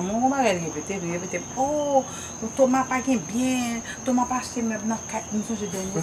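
Crickets chirping in one steady, high, unbroken trill, under voices talking throughout.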